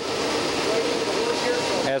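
Harris M1000B web offset press running, heard at its folder and delivery conveyor as folded signatures stream out: a loud, steady mechanical noise.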